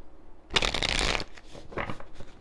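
A deck of tarot cards being shuffled by hand: one dense papery flutter lasting under a second, starting about half a second in, then a shorter one near the end.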